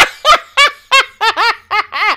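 A woman laughing hard: a run of about seven high-pitched "ha"s, roughly three a second.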